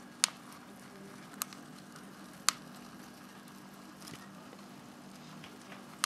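Thin plastic cup of mealworms clicking as it flexes in the hand: three sharp clicks about a second apart, then a fainter one, over a faint steady low hum.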